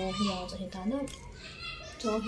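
A woman talking, her voice rising in pitch about a second in, then quieter.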